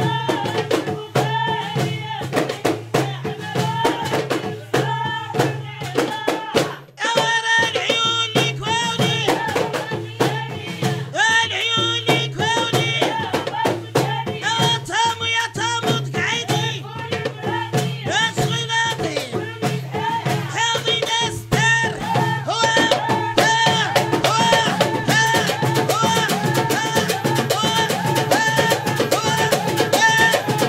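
Moroccan women's percussion-and-vocal ensemble: several women singing together over a fast, driving rhythm of clay goblet hand drums and a hand-struck metal tray. The rhythm and singing break briefly about seven seconds in, then carry on.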